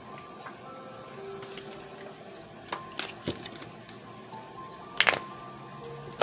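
Soft background music of long held tones, with a few light clicks and a brief rustle of tarot cards being handled about five seconds in.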